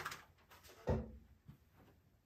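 Handling noise from headphones and their cable near a studio vocal microphone: a dull knock about a second in, then a faint click.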